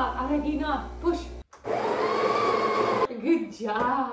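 Built-in grinder of an espresso machine running for about a second and a half, grinding coffee beans. It starts sharply about halfway through and cuts off suddenly, between voices.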